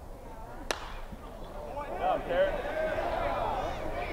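Single sharp crack of a metal college baseball bat meeting a pitch, about two-thirds of a second in, followed by stadium crowd noise that grows louder.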